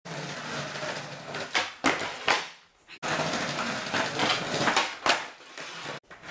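Skateboard wheels rolling on a concrete floor, broken by sharp clacks of the board popping and landing: three near the start, then two more after the sound cuts off abruptly halfway and starts again.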